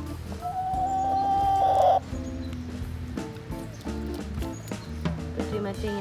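Chickens clucking while they feed, over background music with held notes. One long held tone sounds for about a second and a half near the start and is the loudest thing.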